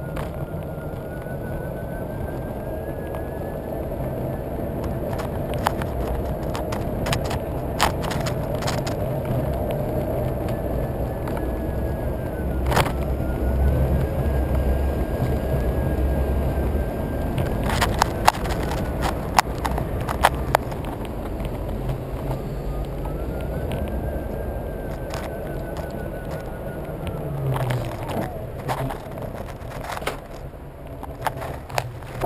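Solowheel electric unicycle's hub motor whining over tyre rumble on asphalt, the whine rising and falling with speed and holding steady at times. Scattered sharp clicks and knocks from the camera mount, thickest a little past the middle.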